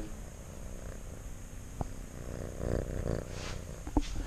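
A small pet close to the microphone making a low purring sound, a fast fine pulsing that grows louder about two seconds in. A single soft click comes shortly before.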